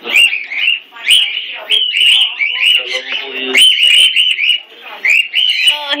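Parrots chirping in an aviary: a quick, loud run of short rising-and-falling calls, several a second.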